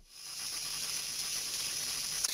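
Steady high-pitched hiss of background microphone noise on the voice recording, fading in over the first half second and then holding level.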